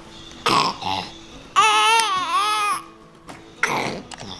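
Baby fussing and crying in a car seat: a couple of short cries, then one longer wavering wail in the middle.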